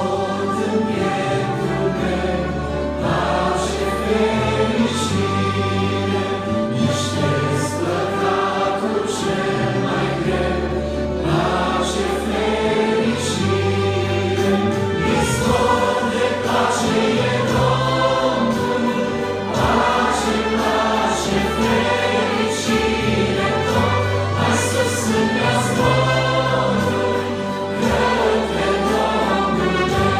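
A small mixed vocal group singing a Romanian gospel hymn in harmony, accompanied by accordion and trumpet, with sustained bass notes under the voices.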